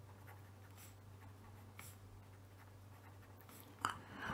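Faint scratching of a pen writing on paper in short strokes, over a low steady hum, with a brief click near the end.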